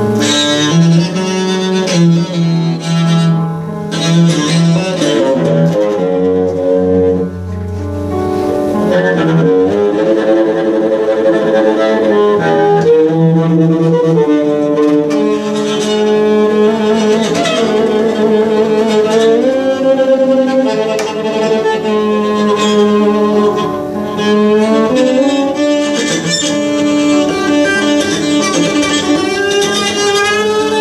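Improvised bowed playing on a small upright bass (a 'midget bass') with long held notes, often two at once, and sliding pitches.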